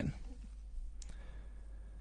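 A pause in the talk: faint low hum and room tone, with a single faint click about a second in.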